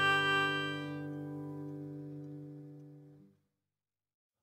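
Background music: a sustained instrumental chord fades away over about three seconds. It gives way to silence near the end.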